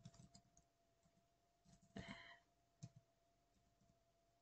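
Faint keystrokes on a computer keyboard as a word is typed: a quick run of clicks at the start, a short louder patch about two seconds in and one more tap near three seconds, over a faint steady hum.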